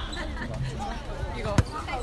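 A basketball bounced once on a hard outdoor court, a single sharp bang about a second and a half in, over voices talking.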